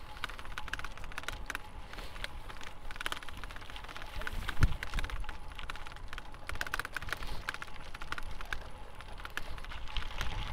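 A bicycle ridden over a bumpy dirt path: rapid, irregular clicking and rattling over a low rumble, with one louder thump about halfway through.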